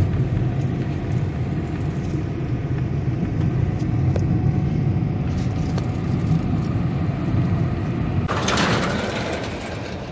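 Car cabin noise while driving: a steady low engine and tyre rumble, with a brief louder rush of noise a little after eight seconds in.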